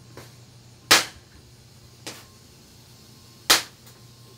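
Two loud, sharp cracks about two and a half seconds apart, each preceded by a fainter click, over a low steady background hum.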